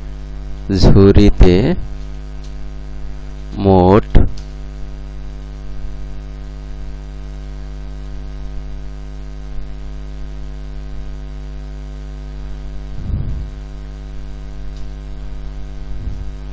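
Steady electrical mains hum with a buzzy stack of overtones, loud in the recording. A voice makes brief untranscribed sounds about a second in, again around four seconds, and faintly near the end.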